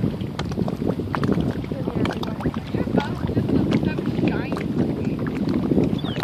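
Wind buffeting the microphone, a steady low rumble over open water.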